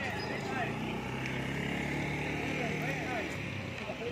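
Motor scooter engine running as it passes close by, fading out about three and a half seconds in.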